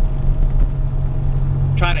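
Steady low rumble of a moving car heard from inside the cabin, with a faint thin hum above it.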